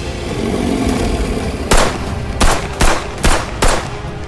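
Gunshots in a film soundtrack: a run of five sharp shots starting a little before halfway in, at about two or three a second, over a deep, steady rumble.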